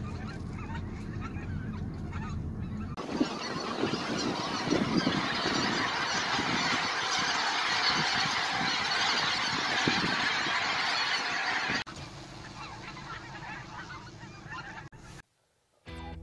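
Low, steady engine hum heard inside a moving car. About three seconds in it cuts to a large flock of wild geese honking in flight, a dense clamour of many overlapping calls. Near twelve seconds this drops to fainter calls.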